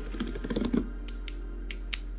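Wax crayons clicking and tapping against one another and their plastic case as they are handled: a quick cluster of small taps about half a second in, then a few sharp separate clicks near the end, over background music.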